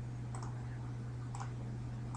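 Two faint computer mouse clicks about a second apart, over a steady low hum.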